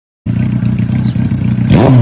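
A vehicle engine running with a steady low hum that starts a moment in, then near the end a sudden rev with a whoosh, its pitch rising sharply and then falling away.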